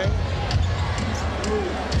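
A basketball being dribbled on a hardwood court over steady arena crowd noise, with a couple of sharp bounces about half a second and a second in.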